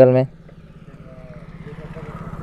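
Motorcycle engine running with a low, steady pulse, growing gradually louder as the bike pulls away.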